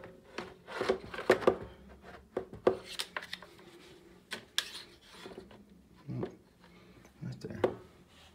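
Plastic food dehydrator trays being handled and stacked: a string of light knocks and scrapes of plastic on plastic, busiest in the first five seconds, with a couple more near the end.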